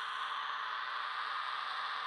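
A steady, even hiss of noise with no tone or pitch in it, like static.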